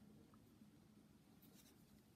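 Near silence: room tone with the faint rustle of cotton yarn being drawn through stitches on a crochet hook.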